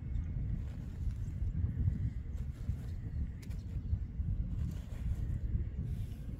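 Wind buffeting the microphone: an uneven low rumble throughout, with a few faint clicks.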